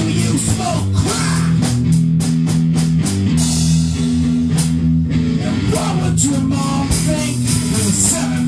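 A rock band playing loud heavy rock: distorted electric guitar chords over a drum kit, with a sung voice in places.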